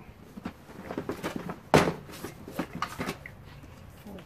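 Cardboard game boxes and small items being shifted and lifted out of a plastic storage tote: scattered light knocks and rustling, with one sharper knock a little under two seconds in.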